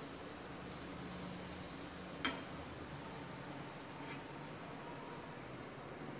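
Faint, steady sizzling of hot oil as an urad dal–stuffed poori deep-fries in a kadai, with one sharp click a little over two seconds in.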